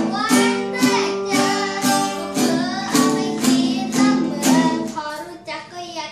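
A boy singing while strumming an acoustic guitar, about two strokes a second under his voice. The playing thins out and drops in level for about a second near the end.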